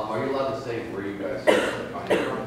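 Indistinct talking, then a single loud cough about one and a half seconds in.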